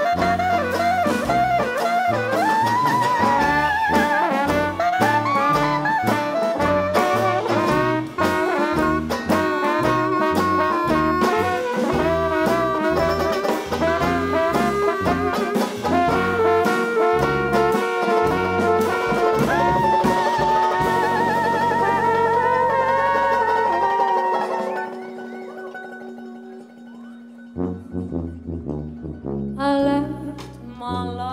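New Orleans-style jazz band playing an instrumental passage live: horns over sousaphone bass and a drum kit with cymbals. The playing settles into long held notes and drops quieter about 25 seconds in, then the full band comes back in near the end.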